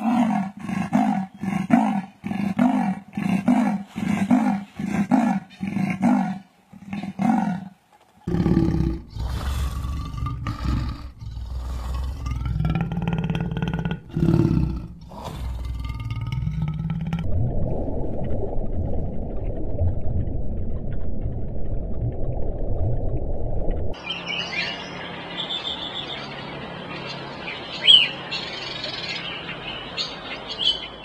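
Leopard sawing call: a rhythmic run of hoarse, rasping grunts, about two a second, followed by deeper, longer growls and calls. Then comes a steady low rush of noise, and near the end a bird chirping.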